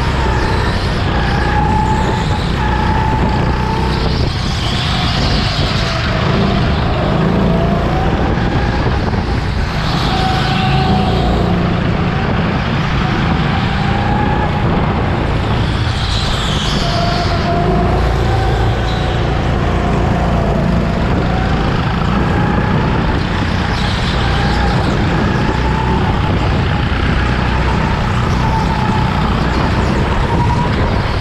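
Onboard sound of an indoor go-kart at racing speed: a steady low rumble, with a motor whine that rises and falls in pitch as the kart speeds up and slows through the corners.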